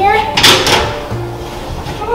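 A baking tray sliding onto a metal oven rack: a short scrape about half a second in, over background music.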